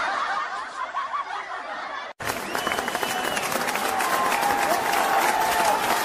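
Canned audience laughter laid over the video. About two seconds in it breaks off in a brief dropout, and a noisier crowd sound with many short clicks carries on.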